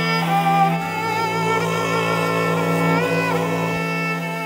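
Morin khuur (Mongolian horse-head fiddle) and cello bowing together in a slow Bulgarian folk tune over a steady held drone. A low cello note comes in about a second in and stops just before the end, while a higher line slides up and back down near the three-second mark.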